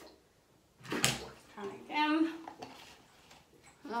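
A sharp clatter of hard objects being handled about a second in, the loudest sound here, followed by a short wordless voice sound and a few softer handling noises.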